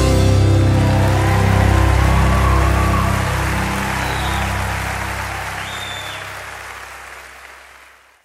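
The final held chord of a live bluegrass band ringing out under audience applause, the whole fading steadily away to near silence.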